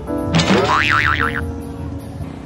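Background music with a cartoon "boing" sound effect dropped in about a third of a second in: a sudden sproing whose pitch wobbles up and down several times over about a second.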